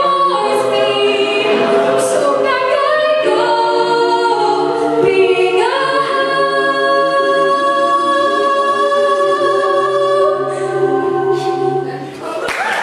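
Mixed-voice a cappella group singing in harmony over a low bass line. About halfway through it moves to a final chord that is held for several seconds and cut off together at the end.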